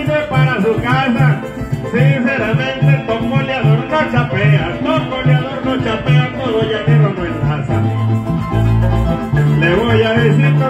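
Llanero joropo band playing an instrumental passage between sung verses: fast plucked strings over a steady, evenly pulsing bass line.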